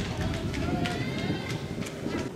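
Voices shouting, with a few sharp knocks scattered through, one near the end.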